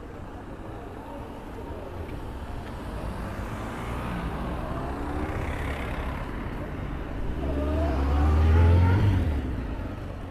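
A motor vehicle passing close by: its engine grows steadily louder for several seconds, peaks about a second before the end, then fades.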